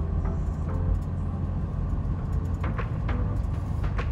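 Steady low rumble of a car's engine and tyres heard from inside the cabin while driving slowly.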